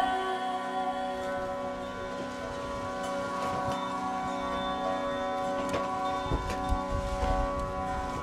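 Tanpura strings plucked in turn, ringing over a steady held harmonium drone, with no voice.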